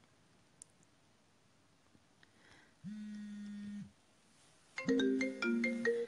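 Phone ringtone: a single steady tone for about a second in the middle, then a short melody of quick stepped notes near the end.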